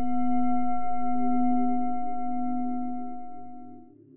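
A struck singing bowl ringing with a long, pure, layered tone that swells and then slowly dies away. Its upper tones stop shortly before the end.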